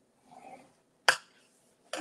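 A stylus drawing a score line in cardstock on a plastic scoring board makes a faint scrape. About a second in comes a single sharp click as the stylus is tapped or set down on the board.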